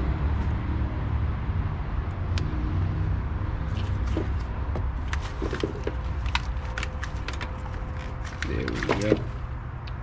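Hands working an engine wiring harness: scattered light clicks and rattles of plastic electrical connectors and wires, mostly in the second half, over a steady low rumble.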